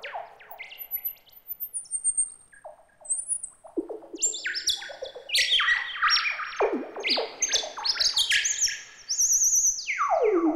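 Moog Werkstatt synthesizer played theremin-style through the Koma Kommander's range sensors, set to its upper pitch range: high, chirpy notes that jump and slide down in pitch, each trailed by delay echoes. The notes grow louder and busier about four seconds in, and a high warbling tone near the end slides steeply down to a low pitch.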